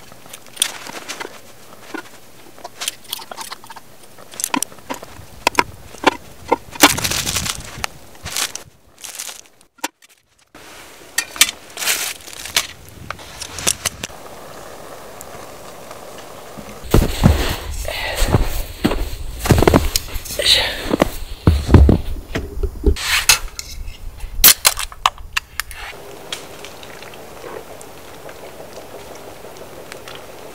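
Light clicks and taps of metal tongs and utensils as ramen toppings are laid into an aluminium mess tin. About seventeen seconds in comes a denser stretch of louder handling and eating-type sounds lasting several seconds.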